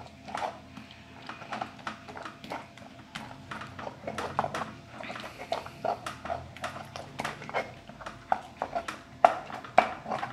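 Stone pestle (tejolote) grinding and knocking in a volcanic-stone molcajete, mashing a wet salsa of roasted tomatoes and chiltepín chiles: an irregular run of short knocks and scrapes, several a second, with one sharper knock near the end.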